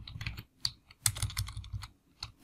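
Typing on a computer keyboard: an irregular run of separate keystroke clicks.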